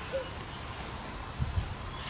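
Wind buffeting the microphone: a faint steady hiss with a low gust about one and a half seconds in.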